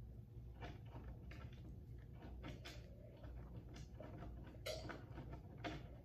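A child drinking from a clear plastic cup: scattered soft clicks and gulps at an irregular pace, a couple slightly louder near the end, over a low steady room hum.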